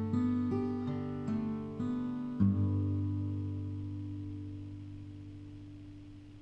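Acoustic guitar ending the song: a few single picked notes, then a final chord struck about two and a half seconds in and left to ring, fading slowly away.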